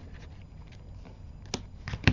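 Faint handling noises of a roll of double-sided red-liner tape against paper pads on a craft table, with a couple of light clicks near the end.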